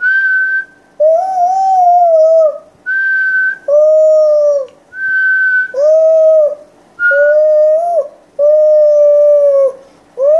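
A toddler's attempt at whistling: five longer, lower hooting 'ooo' notes through pursed lips, each a second or so. Four short, higher, clear whistled notes alternate with them.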